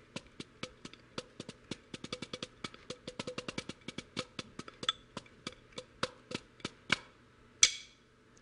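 Wooden drumsticks playing a fast, even run of strokes on a practice pad during a stick-toss exercise. The strokes stop about seven seconds in, followed by one louder click a moment later.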